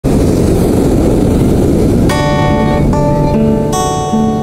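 A rushing noise of beach wind and surf, then about two seconds in an acoustic guitar with a capo starts playing. Its plucked chords ring out, changing roughly every half second, over the continuing noise.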